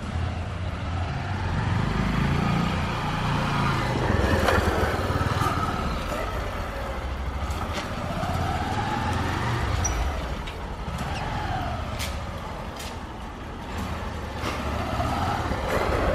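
Honda CG 150 Titan motorcycle's single-cylinder four-stroke engine running as it is ridden slowly at low speed, the revs rising and falling. There are a few sharp clicks along the way.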